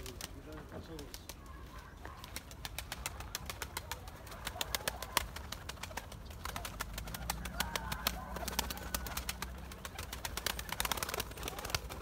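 A flock of domestic pigeons coming down to the ground: wing flaps and many quick sharp clicks and taps, with faint bird calls about two-thirds of the way through.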